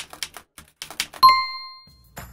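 Typewriter sound effect: a quick run of keystroke clicks, then a single bell ding a little over a second in that rings out and fades.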